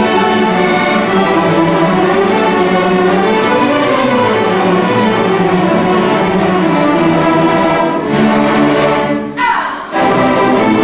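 Student string orchestra of violins, violas, cellos and basses playing a piece together in rehearsal, with sustained bowed chords; the sound briefly dips near the end.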